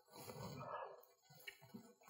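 Faint mouth sounds of a person chewing a soft mouthful of polenta, with a small click about one and a half seconds in.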